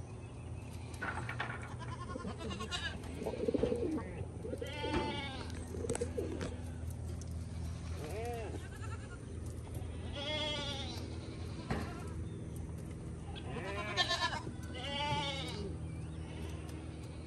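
A goat bleating several times, with quavering, wavering calls, and pigeons cooing low in between, over a steady low hum.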